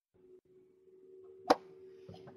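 Faint steady electrical hum from a freshly opened microphone line on an online conference call, with one sharp click about one and a half seconds in.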